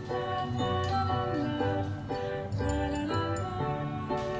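Background instrumental music: a melody of held notes stepping between pitches over a bass line.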